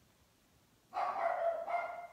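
A dog gives one drawn-out whining call of about a second, starting about a second in.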